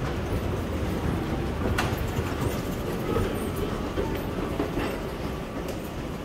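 A train running on the rails: a steady low rumble with a few sharp clicks, the clearest about two seconds in.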